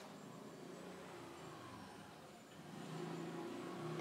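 Faint supermarket background: a low steady hum with indistinct distant sounds, growing a little louder near the end.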